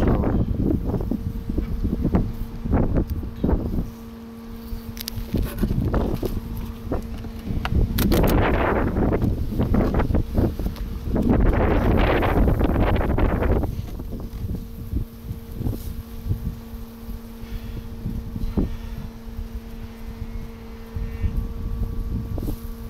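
Wooden hive body scraping and knocking as it is prised up and lifted off the lower box, loudest in two stretches in the middle. Underneath runs a steady hum of honeybees from the open hive, with wind buffeting the microphone.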